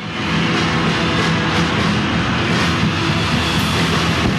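Loud, dense live hard rock music from a concert recording, with steady low notes held throughout.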